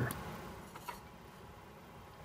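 Faint room tone with two light clicks about a second apart.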